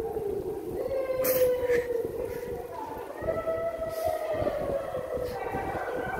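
A person's voice holding long, slowly wavering howl-like notes, one after another, echoing in a concrete tunnel, over a steady rush of wind and bicycle tyre noise.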